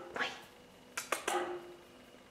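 Young male Siberian cat giving three short calls, one just after the start and two close together around the middle.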